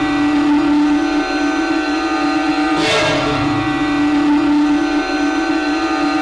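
Background score: a sustained synthesizer drone of several held tones, with a rising noisy swell about three seconds in.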